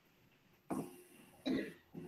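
A person coughing quietly twice, about a second apart, over near silence.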